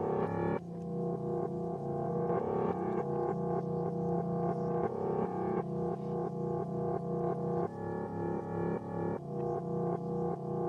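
Keyboard music with a synthesizer-like sound: a steady pulse of repeated notes, about three a second, over held tones, with a higher line of notes joining for a second or so about two-thirds of the way in.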